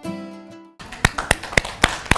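Background music notes fade out, then a small group claps: sharp, even claps about four a second over a light patter.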